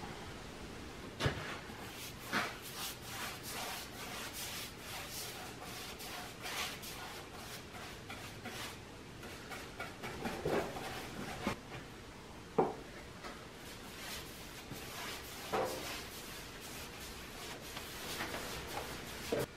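A brush being worked along rough pallet-wood boards to lay on a clear coat: soft, repeated rubbing strokes, with a few sharper knocks now and then.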